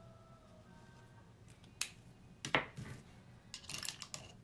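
Sharp plastic clicks from handling brush pens at a painting table: one just under two seconds in, a louder one at about two and a half seconds, and a quick rattle of clicks near the end.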